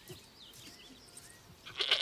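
A goat bleats once, loudly, in the last half second after a quiet stretch.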